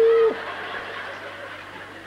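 A man's drawn-out held word breaks off, and an audience laughs, the laughter slowly dying away.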